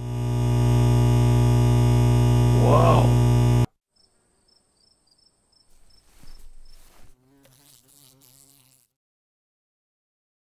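A loud, steady, low electric-sounding buzz from the intro logo's sound effect, with a brief warble near three seconds, cutting off abruptly after about three and a half seconds. Only faint, scattered sounds follow.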